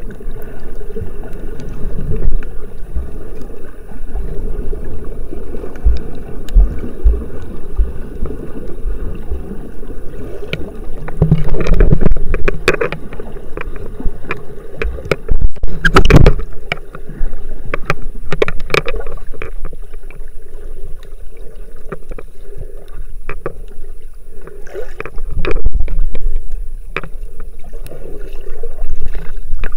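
Muffled underwater water noise from a camera held beneath the surface: a low churning rumble with scattered clicks and knocks, and a few louder surges of splashing and bubbling from the swimmers' strokes partway through and near the end.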